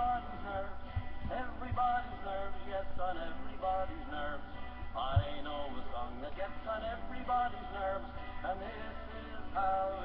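A voice singing a tune.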